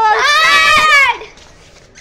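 A child's loud, high-pitched drawn-out shout lasting just over a second.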